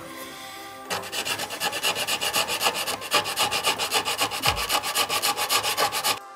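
Sanding stick rubbed back and forth along the edge of a thin vacuum-formed plastic wall part in quick, even strokes, smoothing the brick ends. The rubbing starts about a second in.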